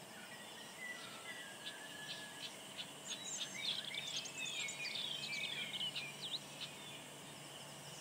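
Small birds chirping: scattered high chirps and short whistles, thickest in the middle, over faint steady outdoor background noise.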